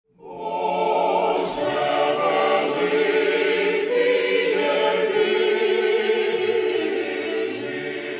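A choir singing in long, held chords, fading in from silence right at the start.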